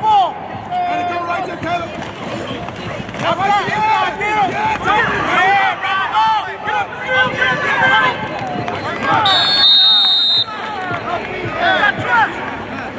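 Many overlapping voices calling out during a football play. About nine seconds in, a referee's whistle blows for about a second, ending the play.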